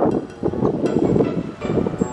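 Wind rumbling on the microphone, with background music starting about a second in: a few struck beats and held notes leading into a song.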